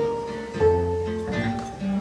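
Two acoustic guitars and a double bass playing a short instrumental passage without singing: a few plucked notes ring on, and a low bass note comes in about half a second in.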